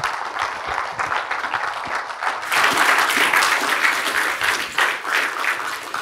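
A congregation applauding: many hands clapping together, the applause swelling about two and a half seconds in.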